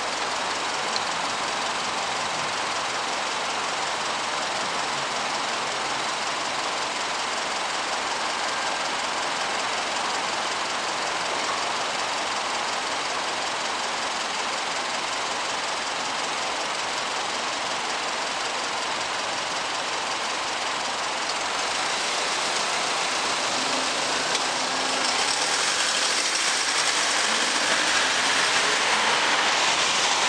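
Steady hum of city traffic waiting at a red light: engines idling and a general road din. The noise grows louder about two-thirds of the way through as the traffic starts to move off.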